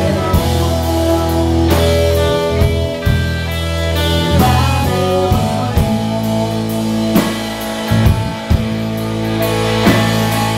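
A rock band playing live: electric guitars, bass and drum kit in a sustained passage, with drum hits scattered through it.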